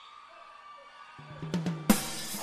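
A short quiet gap, then a live band's drum kit comes in with a quick run of snare and bass drum strokes over a bass note, ending in one loud cymbal crash near the end as the next song starts.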